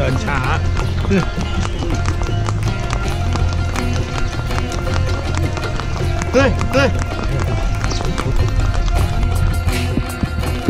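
Background music over the clip-clop of a riding pony's hooves, with a few short spoken words.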